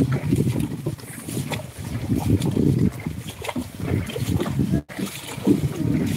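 Carabao-drawn sled dragging through a flooded, muddy rice paddy: irregular sloshing and splashing of mud and water as the animal wades, with a brief cut in the sound shortly before the end.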